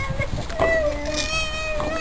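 A small child's voice holding one long, high, drawn-out note, with a lower voice briefly beneath it near the middle.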